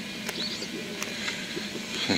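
Small birds chirping in short, scattered notes, with a few sharp clicks.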